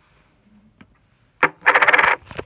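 Handling noise: a sharp click about a second and a half in, then a brief clattering rattle of small hard objects near the end, after a quiet start.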